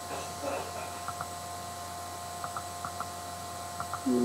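Quiet room tone with a steady electrical hum, a few faint soft ticks, and a faint brief murmur about half a second in.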